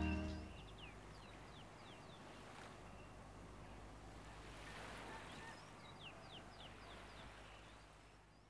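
The last chord of a band's acoustic song dies away in the first half second. Faint background ambience with a low steady hum follows, and a bird gives two short runs of quick falling chirps, one near the start and one around six seconds in.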